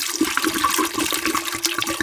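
Vodka poured in a steady stream from an upturned bottle into the stainless-steel pot of a countertop water distiller, the liquid running and splashing into the metal container with a steady ringing tone.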